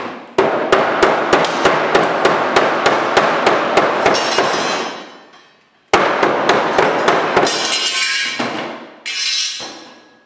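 A hammer beating on a wooden dresser in quick, even blows, about four a second for several seconds, then a second run of blows after a brief pause. A shorter burst of noise follows near the end.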